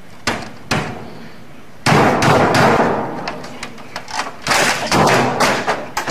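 Desktop computer being beaten by hand with its keyboard: a few sharp knocks, then from about two seconds in a loud run of crashing and banging blows against the hardware.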